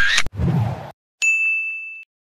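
A single bright ding from an editing sound effect, struck suddenly about a second in and ringing on as it slowly fades.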